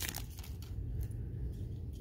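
Foil trading-card pack wrapper and cards being handled, with a few faint crinkles in the first half and low room noise after.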